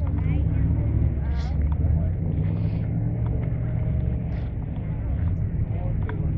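A car engine idling nearby, a steady low rumble, with people talking in the background.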